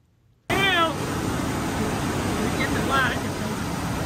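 Rice mill shelling machines running: a loud, steady mechanical noise that comes in abruptly about half a second in, with a man's voice heard briefly over it twice.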